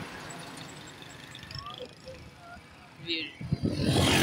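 Faint road traffic noise; about three seconds in it gets much louder as motorcycle engines and a voice come in close by.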